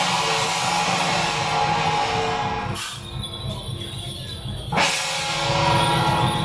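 Temple-procession percussion of drum, cymbals and gong accompanying a Guan Jiang Shou troupe, beating and clashing continuously. The cymbals thin out for a couple of seconds midway, then crash back in loudly about five seconds in.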